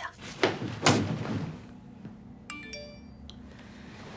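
Two soft thumps about half a second apart as a person drops onto a mattress and lies down on a bed.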